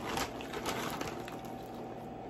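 Faint rustling and a few light clicks of hands working with shredded cheese and a mixing bowl, thinning out about a second in, over a faint steady hum.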